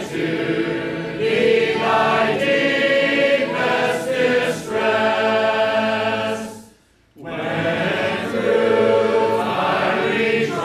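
A church congregation singing a hymn together in many voices, holding long notes, with a brief break between phrases about seven seconds in.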